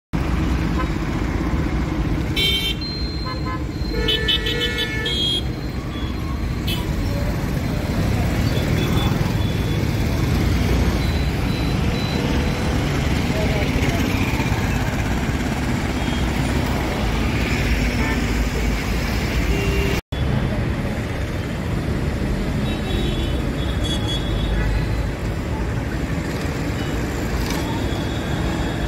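Busy road traffic of autorickshaws, motorcycles and buses: a steady engine rumble with several horn honks in the first few seconds and a few more later. The sound drops out for an instant about twenty seconds in.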